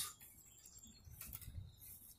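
Near silence: faint outdoor background with a low rumble and a few faint high-pitched sounds about a second in and again near the end.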